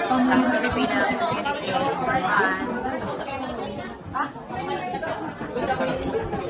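A crowd of people chatting, with many voices talking over one another.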